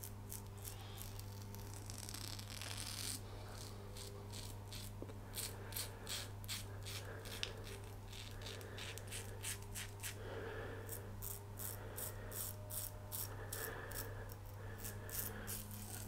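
A Muhle R108 double-edge safety razor with a fresh blade scraping through lathered stubble: a run of short, crisp, rasping strokes, sparse at first and coming quickly from about a third of the way in.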